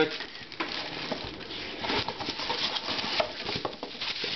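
Plastic packaging crinkling and rustling in the hands: a plastic bag around a power brick and bubble wrap around a laptop battery, with many small crackles.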